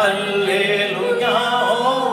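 Worship song sung by a woman and a man into microphones, the voices carried over the church's sound system in long held, wavering notes.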